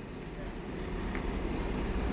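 A faint, steady background hiss with a low hum, growing slightly louder through the pause.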